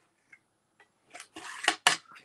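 Paper box and a pencil handled on a craft mat. After a near-silent first second, a run of short taps and paper rustles begins, and the two sharpest clicks come near the end.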